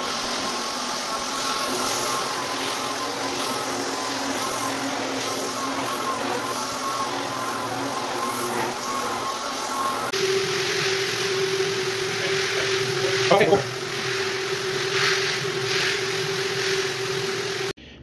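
Rotary floor buffer running steadily, screening (abrading) the oil-based polyurethane finish off a hardwood floor. About ten seconds in the hum shifts to a steadier single tone, with a brief rise and fall in pitch a few seconds later.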